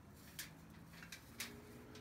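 Near silence: quiet room tone with three faint brief clicks of small objects being handled.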